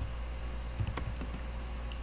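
A few faint, scattered keystrokes on a computer keyboard, fixing a typo in a word, over a low steady hum.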